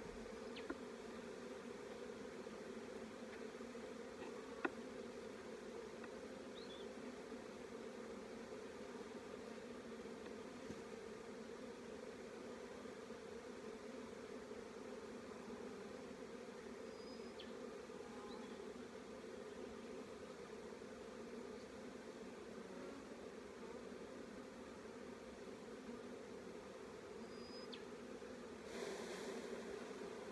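Honeybees humming steadily around an open hive, a dense low buzz. A few faint clicks come early on, and a short rush of noise comes near the end.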